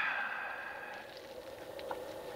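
Quiet room with a faint steady hum, and one soft click near the end.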